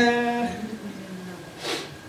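A woman's voice holding a drawn-out hesitation sound ("uhh") through a microphone, dropping in pitch and fading after about a second, then a short breath.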